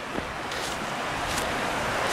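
Steady rushing of a waterfall below, mixed with wind on the microphone.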